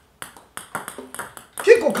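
A table tennis ball struck by a rubber paddle on a backhand gyro serve, followed by a quick run of light, sharp clicks as it bounces off the table. Speech comes in near the end.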